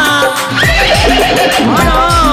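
Live Rajasthani folk bhajan: a male singer's voice sliding up and down in pitch, over hand-drum strokes that drop in pitch and a steady jingling rattle.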